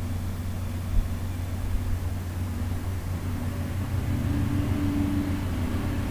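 Steady low background hum, with a faint humming tone joining in during the second half and a soft thump about a second in.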